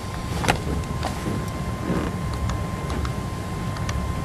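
Meeting-room background noise: a steady low rumble with a thin steady tone from the sound system, and a few scattered clicks and knocks, one sharper click about half a second in.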